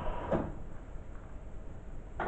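Beko front-loading washing machine: its steady running noise stops with a short knock about a third of a second in, leaving a quieter pause.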